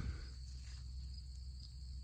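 Steady high-pitched insect chorus over a low, steady background rumble.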